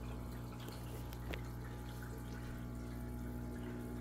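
Aquarium sponge filter bubbling and trickling as air lifts water up its riser tube, over a steady low hum.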